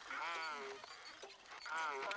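Wordless, wavering vocal sounds from an animated character, heard twice: one in the first part and another starting near the end.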